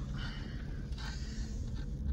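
Low, steady engine and road rumble inside the cab of a Chevy Silverado 1500 pickup driving slowly down a street.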